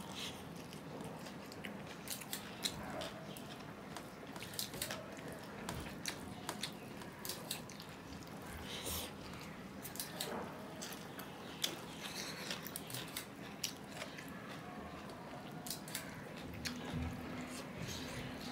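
A man chewing mouthfuls of rice mixed with mashed potato and bean bhorta, close to the microphone, with many short, irregular wet smacks and clicks. His fingers mix rice on a steel plate between mouthfuls.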